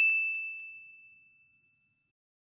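A single bell-like ding sound effect, struck just before and ringing on one clear high tone that fades away over about a second and a half.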